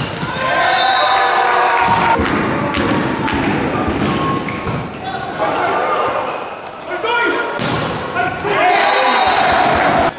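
Volleyball rally in an indoor sports hall: the ball is struck repeatedly with sharp smacks and thuds of serves, digs and spikes, while players shout, loudest shortly after the start and again near the end.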